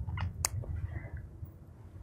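Quiet room tone with a low steady hum, and two or three faint clicks in the first half second, like small handling noises.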